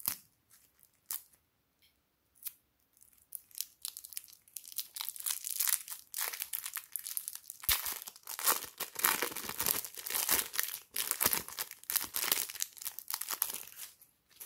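Thin plastic piping bag crinkling and tearing as it is pulled apart and peeled off a lump of soft clay. A few light crackles at first, then dense, continuous crinkling from about four seconds in.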